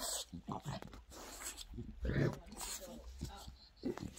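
French bulldog making short, irregular vocal noises up close while play-fighting with a hand.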